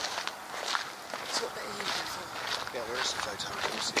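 Footsteps walking on a rough concrete path, with quiet voices talking a little way off partway through.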